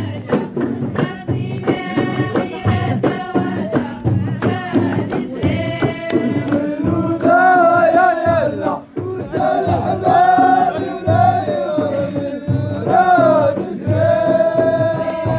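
Ahidous, Amazigh group song: voices chanting together over a steady beat of frame drums and sharp claps. In the second half the voices swell into long held notes, the loudest part, with a short drop just before the middle of that stretch.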